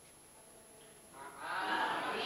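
Near silence for about a second, then an audience calling out an answer together in chorus, several voices at once, heard faintly off-microphone.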